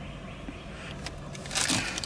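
Faint clicks of hands handling a plastic phone mount, then a short rustle of a plastic parts bag being picked up, about a second and a half in.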